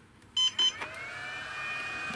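ISDT T6 battery charger powering up as its input lead is plugged in: two short high beeps, then a whine that rises, holds steady and begins to fall away near the end.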